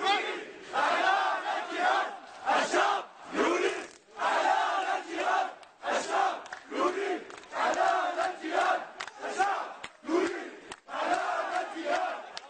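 A large crowd chanting protest slogans in unison, in short rhythmic phrases about once a second.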